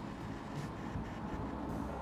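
Steady outdoor background noise, mostly a low rumble, with no distinct events.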